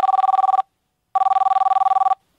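Cellphone ringing with a classic telephone-style trill: two rings of about a second each, separated by a short pause. Each ring is a fast-warbling two-tone buzz.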